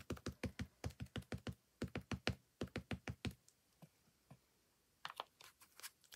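An ink pad tapped repeatedly onto a clear stamp to ink it: a quick run of light taps, about six a second, that stops a little over three seconds in. A few scattered soft taps follow near the end.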